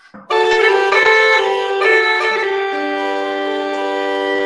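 Uilleann pipes sounding a held drone-and-chord texture: several sustained notes that shift during the first two seconds, then a steady chord from the regulators with a lower note joining about two and a half seconds in.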